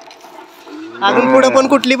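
A bull lowing: one loud call that begins about a second in, sliding up in pitch at its start.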